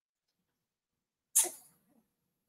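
A single short, sharp burst of breath noise from one person, like a sneeze, about a second and a half in, fading within half a second; the rest is near silence.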